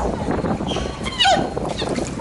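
A woman laughing and squealing, with a high, falling squeal a little after a second in: ticklish laughter as spa fish nibble her feet in the tank.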